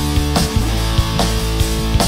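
Instrumental rock passage: electric guitars and bass guitar holding chords over a steady drum beat, with no singing.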